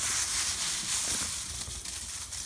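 Dry, papery-winged moringa seeds rustling and crinkling in a paper bag as a hand digs and stirs through them, a steady dense rustle.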